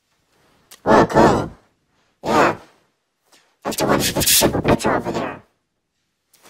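A person's voice making wordless vocal sounds in three bursts: one about a second in, a short one near the middle, and a longer, breathier one in the second half.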